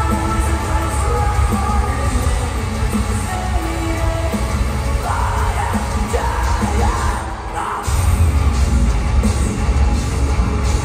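Metalcore band playing live in a large hall, heard from within the crowd: heavy guitars, bass and drums under a vocal line. The bass and drums drop out briefly a little past seven seconds in, then the full band comes crashing back in.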